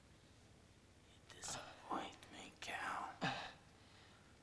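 A man's strained, breathy gasps and short croaking vocal sounds as he is choked by the throat, starting about a second in and coming in several short pushes.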